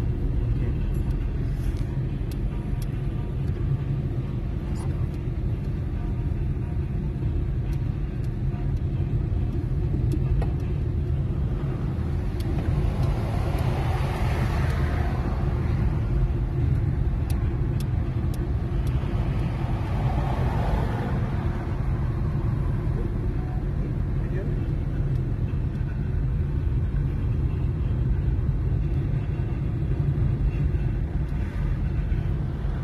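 Steady low engine and road rumble of a car heard from inside its cabin while driving, with a hissing swell of tyre and traffic noise rising and fading twice around the middle.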